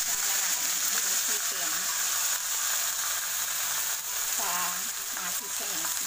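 Raw chicken pieces sizzling in hot cooking oil in a wok, a loud, steady hiss.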